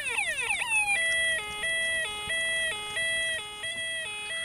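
Electronic siren on a radio-controlled model police boat: a quick run of falling sweeps, then about a second in it switches to a two-tone pattern, stepping between a higher and a lower note about every two-thirds of a second.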